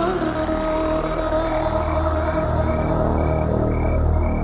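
Psychedelic downtempo (psybient) electronic music: a deep droning bass under long held synth tones, with a short high blip repeating about twice a second from about halfway through.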